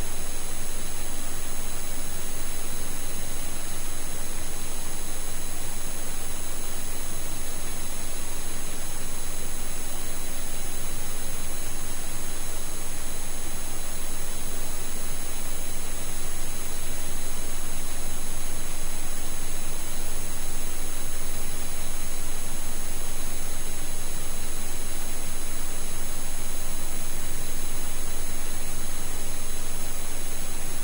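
Steady hiss like static, with faint high-pitched whines, unchanging throughout: electronic noise of the recording chain.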